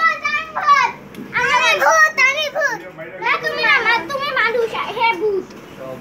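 Young girls' voices talking in short, high-pitched stretches of speech.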